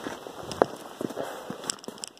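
Boots scuffing and crunching on sand and grit over sandstone, with gear rustling and a few sharp clicks, the sharpest about half a second in.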